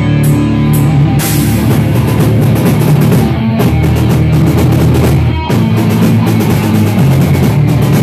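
A live rock band plays electric guitar and drum kit at full volume. About a second in, the drums and cymbals come in hard and fast, and the music stops briefly about five and a half seconds in before going on.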